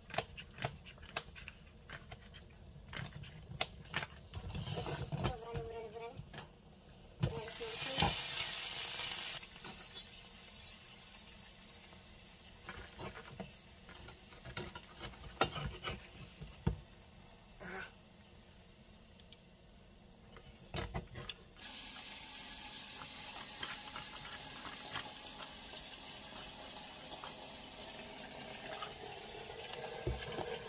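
Kitchen cooking sounds: a knife tapping quickly on a cutting board as herbs are chopped, a short loud hiss, then a spatula scraping and knocking in a stainless steel frying pan. From about two-thirds of the way through, a kitchen tap runs steadily into the sink.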